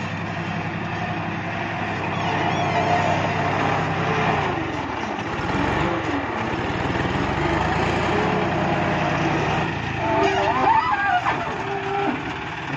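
Diesel tractor engines running steadily as a front loader works, with the engine note changing about halfway through.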